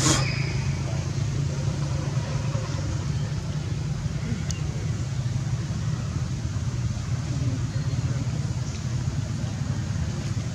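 Steady low rumble with an even hiss over it, holding level throughout, and one sharp click right at the start.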